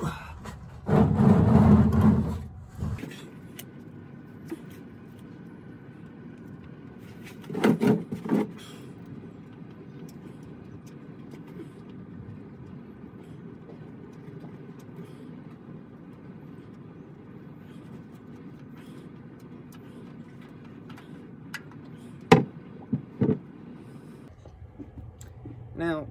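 Handling noises from working under a vehicle while the oil filter comes off: a loud burst of rustling and scraping in the first seconds, another shorter one about eight seconds in, and two sharp knocks near the end, over a low steady background.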